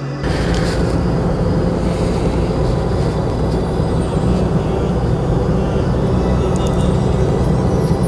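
Steady car-interior driving noise, engine and road rumble, coming in suddenly just after the start, with background music underneath.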